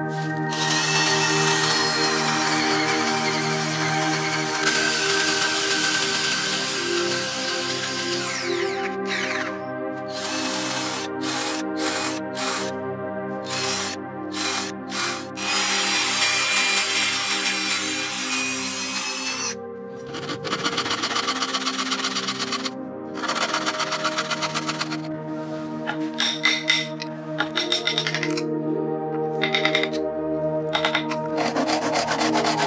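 Cordless drill with a Forstner bit boring into a hardwood block, running in long whining stretches and in short stop-start bursts, over ambient background music.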